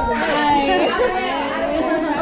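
Several girls' voices talking over one another at once, an unbroken babble of chatter with no single clear speaker.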